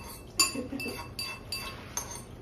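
Metal utensils clinking against bowls while eating, about five short ringing clinks, the loudest about half a second in.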